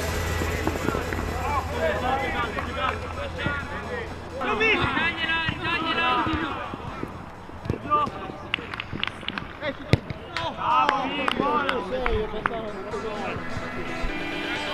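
Footballers shouting and calling to each other during play on a seven-a-side pitch. Several sharp ball kicks and knocks come in the second half. Background music fades out over the first few seconds.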